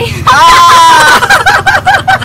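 People laughing: a long high-pitched squeal of laughter, then quick repeated laughs.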